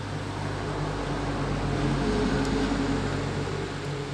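Steady low machine hum, with a higher drone that swells through the middle and eases off near the end.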